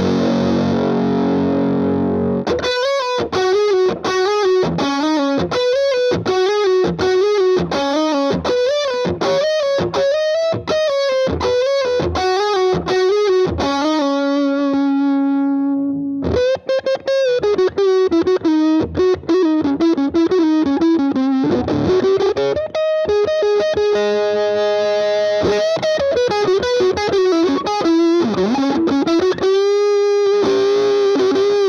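Bilt S.S. Zaftig semi-hollow electric guitar on its bridge pickup, played with a distorted, overdriven tone through a Marshall 18-watt amp. A chord rings for the first couple of seconds, then a single-note solo of picked lines with string bends and vibrato, broken by a few long held notes.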